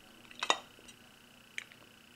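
Small hard objects clicking against each other or the work surface: a short cluster of sharp clicks about half a second in, then a single click about a second later.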